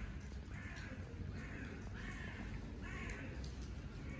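A bird cawing: about five short, harsh calls in a row, roughly two-thirds of a second apart, over a steady low rumble.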